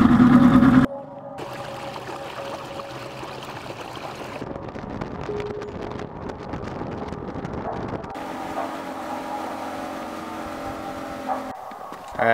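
A fishing boat's motor running while the boat travels along the river, a steady engine sound with rushing noise. It is louder for about the first second, then drops suddenly and carries on steadily across a few edited cuts.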